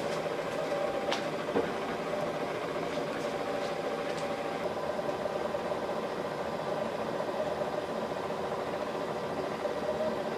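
CNC machine running while its LaserShoe II laser attachment engraves plywood: a steady mechanical hum with a few faint ticks in the first half.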